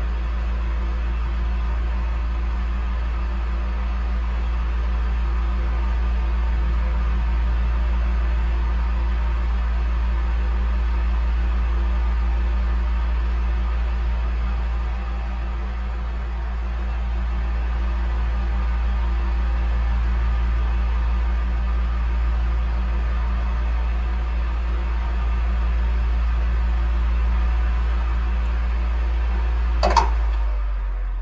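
Household electric fan running steadily: a constant low motor hum under an even hiss of moving air, swelling and easing slightly.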